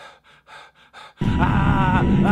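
A man panting in quick, short, frightened gasps, about five a second. About a second in, loud music with wavering, sliding tones cuts in over it.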